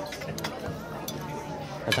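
Low voices talking at a table, with a couple of sharp clinks of metal cutlery against plates and dishes.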